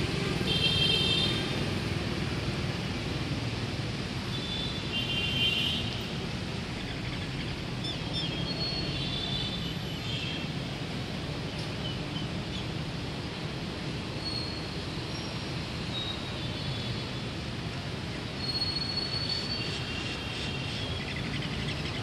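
Steady rumble of city traffic, with short high-pitched tones now and then, about once every few seconds.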